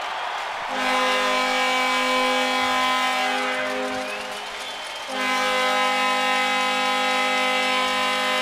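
Arena goal horn sounding two long, steady blasts, the second starting about five seconds in, over crowd cheering, marking a goal just scored.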